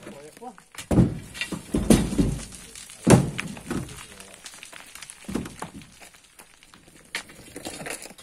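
A long iron pry bar driven into packed earth and stones, giving about half a dozen irregular dull thuds and crunches, the loudest about three seconds in.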